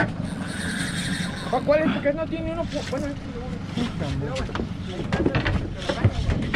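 Indistinct voices calling out over wind and water noise, with a run of quick clicks in the second half as a spinning reel is wound in against a hooked fish.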